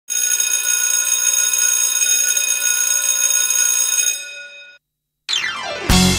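A loud, steady ringing tone, alarm- or bell-like, that holds for about four seconds and then fades out. After a short gap a falling sweep in pitch leads straight into music at the very end.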